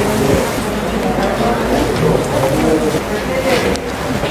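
Several people talking at once, their words indistinct, over a steady low rumble.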